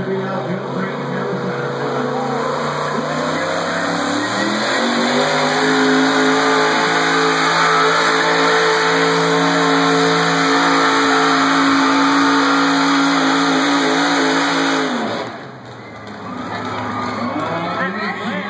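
Pickup truck engine under full load pulling a weight-transfer sled in a truck pull. The engine note climbs over the first few seconds, then holds a steady high rev for about ten seconds, and cuts off abruptly about fifteen seconds in as the pull ends.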